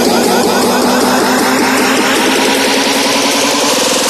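Vinahouse dance music at a build-up: a noise sweep rises steadily over a fast repeated synth figure, with the bass taken out.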